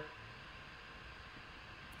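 Faint, steady hiss of room tone with no distinct sound events.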